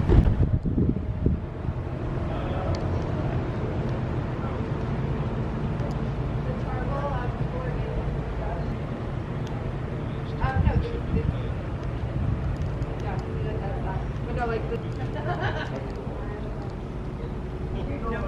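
Outdoor ambience: a steady low rumble with faint voices of other people talking nearby, coming and going a few times.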